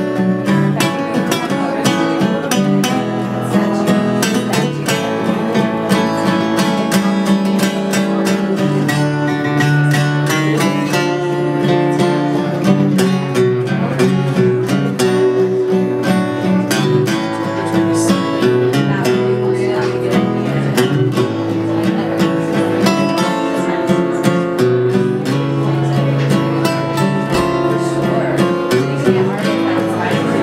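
Two acoustic guitars playing together live, with a steady strummed rhythm and chords changing throughout.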